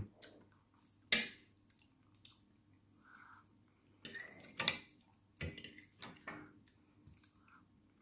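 Metal fork clinking and scraping on a plate as food is picked up, with a sharp clink about a second in and a run of scrapes and taps between about four and six seconds, over a faint steady hum.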